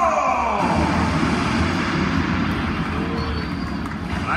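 Arena music over the public-address speakers ends with a falling glide in the first half second. It leaves a steady, reverberant din of a large indoor arena.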